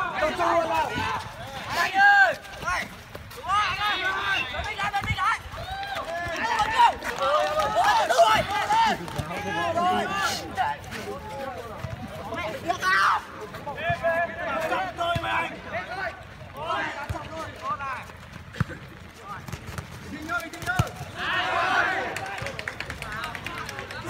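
Voices of footballers and onlookers calling out across an outdoor pitch during play, heard at a distance and overlapping, with a few short thuds.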